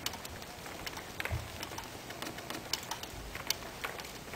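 A bird calling, with a short low call about a second and a half in, over many scattered sharp clicks and crackles.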